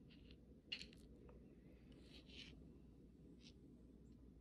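Near silence with a few faint, short clicks and scrapes as a gel polish bottle and its brush are handled. The sharpest click comes about three-quarters of a second in.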